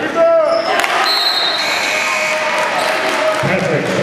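Sounds of a basketball game in a gym: a basketball bouncing on the hardwood court with sharp knocks, short high squeaks typical of sneakers on the floor, and voices from players and spectators.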